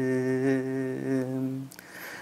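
A man singing a Tamil worship song unaccompanied, holding one long, steady note that breaks off near the end.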